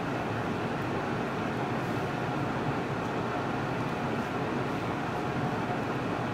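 A steady, even rushing noise, like a room's ventilation or air-conditioning running, with no clicks or other distinct events.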